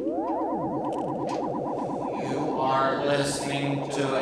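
Electronic synthesizer sounds: a mesh of tones rapidly sliding up and down in pitch over a steady drone. About two and a half seconds in, a voice run through heavy effects comes in on top.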